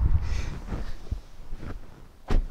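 A person climbing into a car's driver's seat with wind buffeting the microphone: a low rumble at first, then rustling and a few light knocks as he settles in.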